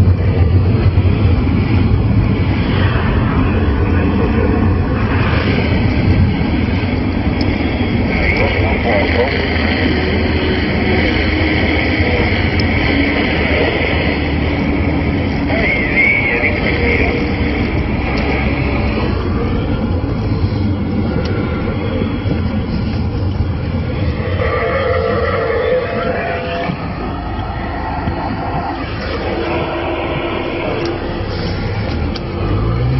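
CRT SS6900N CB transceiver receiving on the 27 MHz band during skip propagation: continuous static with faint, garbled voices of distant stations fading in and out and a few brief whistles.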